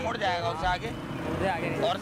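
Men talking on a busy street, with a low, steady traffic rumble behind them.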